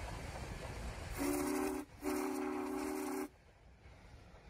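Steam locomotive whistle blowing two blasts, a short one and then a longer one of about a second. It sounds a steady chord of several tones with a breathy hiss, over the low rumble of the passing train.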